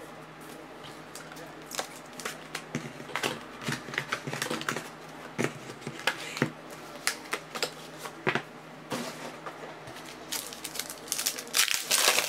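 Trading cards and rigid plastic card holders being handled on a tabletop: a run of small clicks, taps and rustles, with foil card-pack wrappers crinkling, busiest and loudest near the end.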